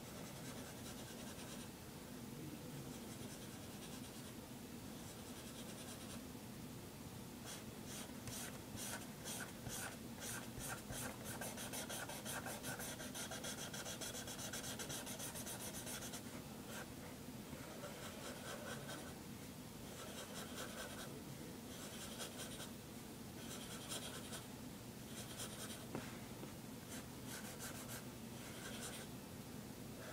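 Pen scratching on paper as someone draws, in runs of quick short strokes. The strokes are densest in the middle stretch and break into shorter runs with pauses later on.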